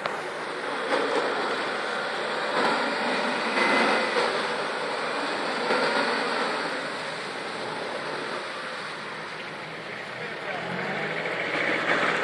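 Nissan Navara 4x4 engine running as the ute drives through a mud hole, tyres churning and splashing through wet sand.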